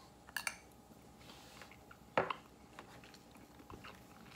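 Quiet mouth sounds of tasting sauce off metal spoons: a few small clicks and smacks, the sharpest about two seconds in.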